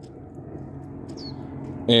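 A few short, faint bird chirps over a low steady background hum, with a man's voice starting again near the end.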